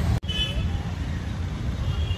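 Street traffic noise: a steady low rumble of road vehicles, which drops out for an instant shortly after the start.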